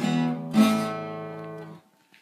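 Acoustic guitar ending a song with two strummed chords, the last one about half a second in, left to ring and fade away before the end.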